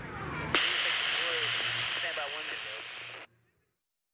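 Railroad scanner radio: a click, then a hissing transmission with a voice under the static, cut off abruptly a little over three seconds in.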